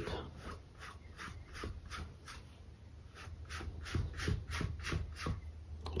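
A dry round mop brush sweeping lightly back and forth over wet acrylic paint on a stretched canvas: soft, even swishes, about three or four a second, with a few faint dull knocks in the second half.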